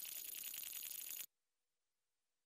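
Faint, rapid rattling shimmer with a few steady high ringing tones, the tail of a TV programme's intro sound effect. It cuts off suddenly just after a second in.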